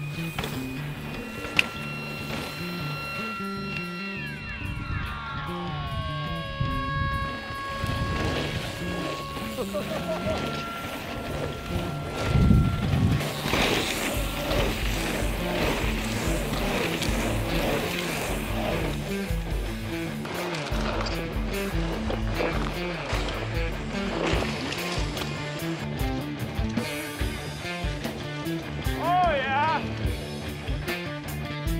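Background music with a steady beat and bass line. Sustained tones slide downward a few seconds in.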